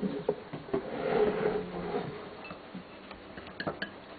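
Light clinks and knocks of glassware being handled on a kitchen counter: a few sharp taps at the start and again near the end, with softer rustling between.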